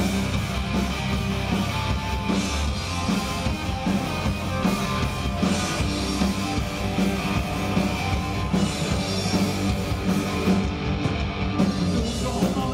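Live punk rock band playing: electric guitars and drum kit, loud and continuous.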